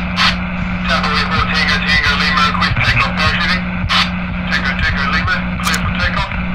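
Indistinct, unintelligible voices over a steady noisy hum with scattered clicks, starting suddenly: a garbled 'incoming audio signal' effect.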